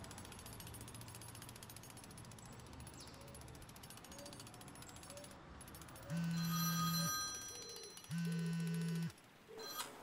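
Mobile phone ringing twice, each ring a steady electronic tone about a second long with about a second's gap between them.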